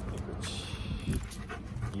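Golden retriever panting in quick, regular breaths while walking on a leash.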